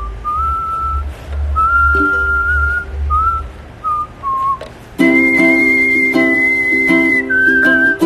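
A man whistling a melody in clear, held notes over a strummed ukulele. About five seconds in, the strumming becomes steady and the whistle jumps to a higher note.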